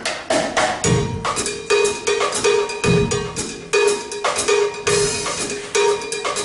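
A jazz big band's rhythm section kicks off a Latin groove: drum kit strokes with a repeating high, knocking percussion accent in a steady pattern and a low thud about every two seconds.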